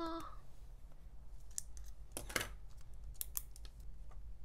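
A retractable gel pen being picked up and handled on a desk: a few sharp plastic clicks, the strongest a quick double click about two seconds in and another near the end.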